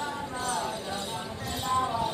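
Santali Karam folk song: a woman's voice singing a melody over jingling bells and steady, clip-clopping hand-drum beats.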